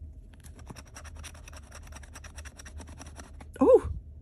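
Metal scratching tool scraping the coating off a scratch-off lottery ticket in quick, even strokes, about ten a second, for about three seconds. A brief voiced sound follows near the end.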